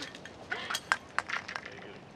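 A handful of light, sharp clinks and taps of small hard objects, scattered over about a second and a half.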